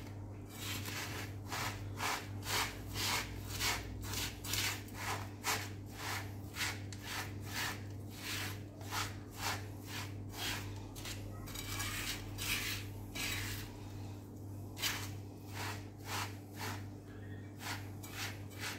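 A spatula scraping and stirring dry, toasted kataifi (shredded kunafa dough) and nuts in a nonstick frying pan, in rhythmic rustling strokes about two a second. A steady low hum runs underneath.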